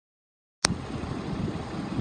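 Silence, then a sharp click about half a second in, followed by the steady low running of a 2001 Toyota Avalon's 3.0 V6 at idle. The engine has a slight misfire.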